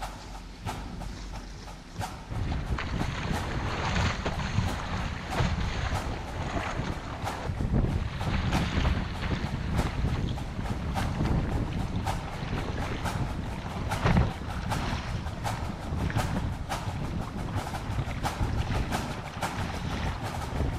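Wind buffeting the microphone and water rushing and splashing along the hull of a sea kayak paddled through choppy sea. It gets louder about two seconds in, with one stronger splash about two-thirds of the way through.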